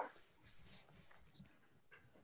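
Near silence: room tone, with one short faint sound right at the start and a few fainter soft sounds after it.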